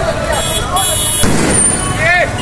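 Street ambience at a busy crossing: a crowd's voices over passing road traffic, with a short sharp crack about a second in.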